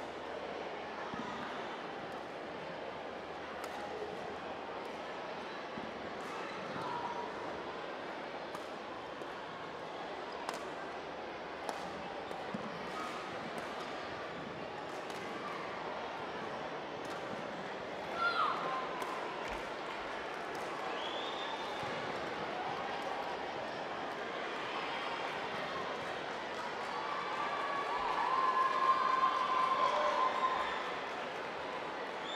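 Badminton rally: sharp clicks of rackets striking the shuttlecock and shoes squeaking on the court, over a steady murmur of hall crowd. The crowd noise grows louder near the end as the point is won.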